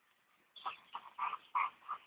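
Slovak Cuvac dogs at play: five short vocal bursts in quick succession, starting about half a second in.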